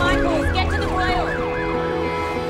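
Ambulance siren in a fast rising-and-falling yelp, about three sweeps a second, fading out near the end, over background music.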